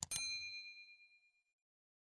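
Notification-bell sound effect: a single bright ding that rings out and fades away over about a second and a half.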